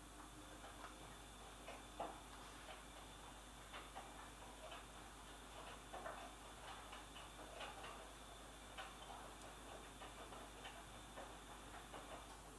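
Near-silent room tone with faint, irregular small clicks and rustles from objects being handled on a table, and a thin steady high whine underneath.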